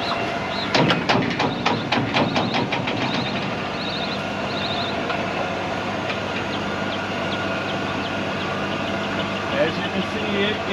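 Electric mechanical bar screen running, its rake drive clattering with a quick run of knocks, about five a second, for two seconds near the start, over a steady machine hum. A few short bird chirps come in about four seconds in.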